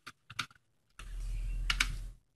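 Computer keyboard typing: a few separate keystroke clicks, with a low hum and faint hiss coming in about a second in.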